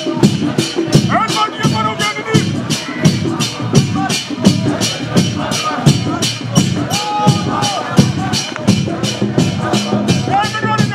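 A street procession's drums and jingling hand percussion keeping a steady beat of about three strokes a second, with a crowd of voices singing and calling out over it.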